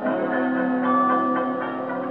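1920s dance-band fox trot played from a 78 rpm shellac record on an acoustic Victor Orthophonic Victrola Credenza with a steel needle. The band holds sustained notes, with a chord change near the end.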